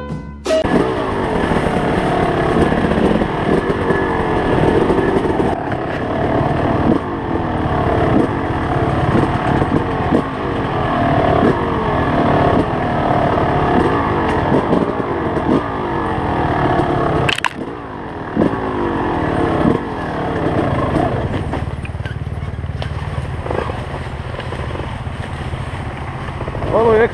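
Enduro dirt bike engine being ridden on a forest trail, its pitch rising and falling over and over as the throttle is blipped, with a sharp knock about two-thirds of the way through and steadier running near the end.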